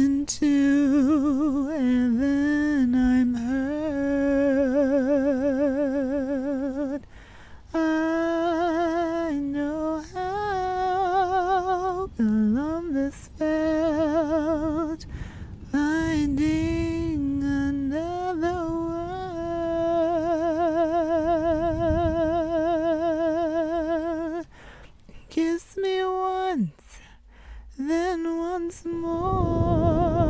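A woman humming a slow melody without words. She holds long notes with a wide vibrato and breaks briefly between phrases.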